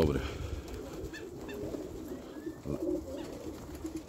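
Domestic pigeons cooing, with a few faint clicks about a second in.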